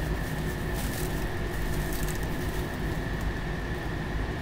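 Clear plastic wrap rustling and crinkling as it is peeled off a car's door and side mirror, over a steady background hum.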